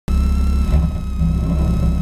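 Spec Miata's four-cylinder engine idling steadily with the car stopped, its low, even firing pulse the main sound, with a thin steady high whine alongside.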